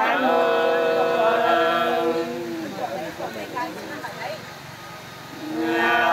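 Unaccompanied Nùng sli folk singing: long, held, slowly bending vocal notes. The singing breaks off about two seconds in and starts again near the end.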